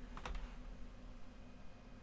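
A few faint clicks from the computer's keyboard or mouse in the first half second, then a low, steady room hum.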